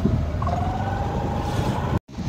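Steady rumble of a two-wheeler's engine and street traffic while riding on the back of the bike, with a faint tone that rises slowly.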